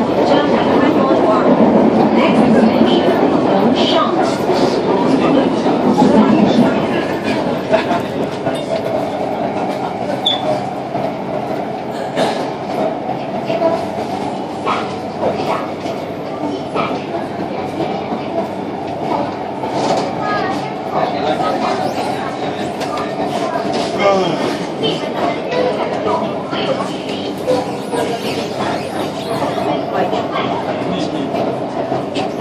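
Running noise heard inside a moving Shenzhen Metro Line 4 carriage of CSR Nanjing Puzhen stock: wheels on rail with scattered clicks over a steady hum. It is louder for the first seven seconds or so, then settles.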